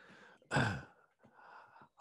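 A man's audible breathing into a computer microphone: a short voiced sigh about half a second in, then a softer breath before he starts speaking.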